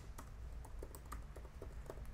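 Computer keyboard typing: faint, irregular key clicks, about five a second, over a low steady hum.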